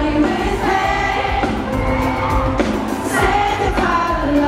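Live pop music: a male lead singer sings held notes into a microphone over a band with a steady bass beat.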